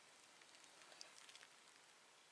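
Near silence: faint room hiss, with a few faint ticks about a second in.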